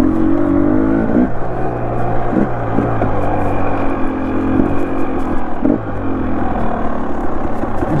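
Dirt bike engine running as the bike is ridden along a trail, its note rising and falling with the throttle several times.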